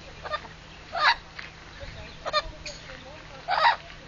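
Amazon parrot giving a few short, harsh, honking squawks, the loudest about a second in and again near the end.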